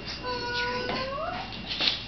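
A cat's long meow, held on one pitch and rising at the end, then a short knock near the end.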